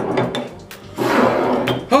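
A man blowing out a long, loud, breathy exhale from a mouth burning with hot sauce, after a light knock of a glass sauce bottle set down on the wooden table.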